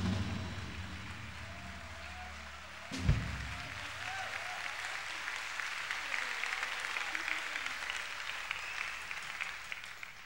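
Live audience applauding at the end of a jazz-pop number. The band's last sustained chord dies away over the first few seconds, with a single low thump about three seconds in. The applause swells and holds, then starts to fade right at the end.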